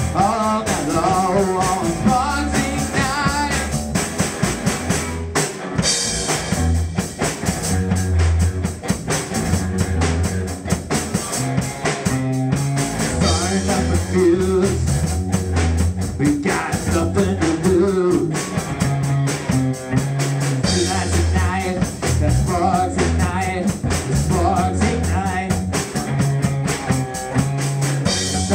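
Rock band playing live: electric guitar and bass over a drum kit, a driving rock passage.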